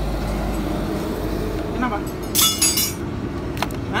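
Steady low rumble of passing road traffic, with a short burst of sharp clinking lasting about half a second, a little over two seconds in.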